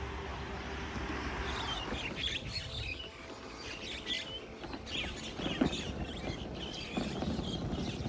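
Birds chirping, many short high calls that begin about a second and a half in, over a steady low hum that fades after the first couple of seconds.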